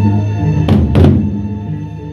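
Gendang beleq ensemble of Lombok: the large barrel drums land two heavy strokes close together near the middle, each ringing out, over sustained low ringing tones.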